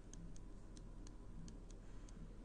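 Faint, irregular light ticks of a stylus on a digital writing tablet as words are handwritten, several a second, over a low steady hum.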